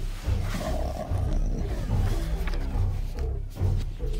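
A creature's growling roar sound effect over background music with a low pulsing beat.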